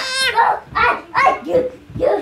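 A baby babbling: a run of about four short, high-pitched vocal sounds.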